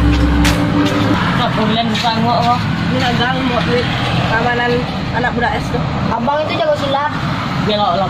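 Background music that ends about a second in, followed by people talking in Indonesian or Minang, with road traffic going by behind the voices.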